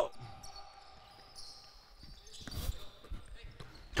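Faint thuds of a basketball and players' footsteps on a hardwood gym floor, the loudest a couple of thuds about two and a half seconds in.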